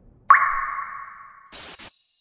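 Two trailer sound-design hits: the first, a fraction of a second in, rings and fades over about a second; the second, about halfway through, is followed by a thin, high-pitched steady ring that carries on past the end.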